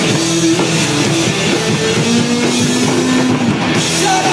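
Live rock band playing: distorted electric guitars, bass and a drum kit, loud and steady, with one note held for about a second midway.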